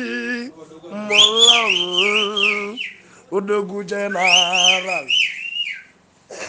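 Live Igbo music: a man's voice holding long chanted notes, with a high whistling melody weaving up and down above it, in two phrases.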